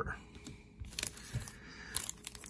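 Trading cards and a foil card pack being handled: a few light clicks and rustles, with a soft knock about halfway through.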